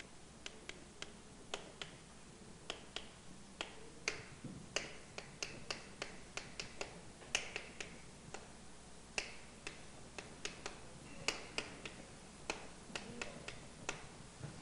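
Chalk writing on a blackboard: a run of quick, irregular taps and short scratches as letters and numbers are written, fairly faint.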